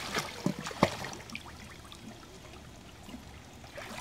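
Water splashing as a small child swims, paddling with her arms. A few sharp splashes come in the first second, then the sound fades to a faint wash of water.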